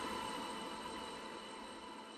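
Faint steady hiss with a few faint steady tones, slowly fading.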